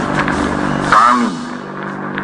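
Hiss and steady hum of an old, worn archival speech recording, with a man's voice heard briefly about a second in, just before the historic reading of Indonesia's Proclamation of Independence gets under way.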